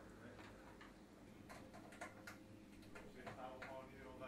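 Near silence: a few faint clicks and ticks through the middle, with faint voices near the end.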